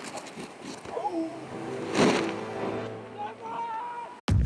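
Excited wordless shouts and whoops from people, a few short calls with the loudest about two seconds in and a held higher whoop near the end, over faint outdoor background noise.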